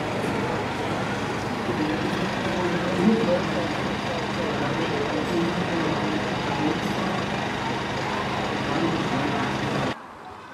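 An engine running steadily, with people talking over it.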